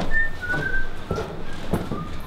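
A person whistling a short tune of brief notes that step mostly downward, with a few sharp knocks alongside.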